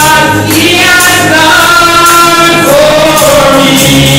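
Live gospel song: a woman's lead voice sung into a microphone over instrumental backing with sustained low notes and a steady percussive beat.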